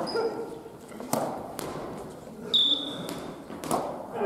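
Badminton rally: rackets striking the shuttlecock with sharp cracks, three or four hits a second or so apart, with a brief high sneaker squeak on the wooden gym floor midway.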